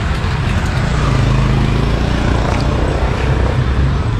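Road traffic noise with a motor vehicle running close by, a steady low hum that grows stronger about a second in.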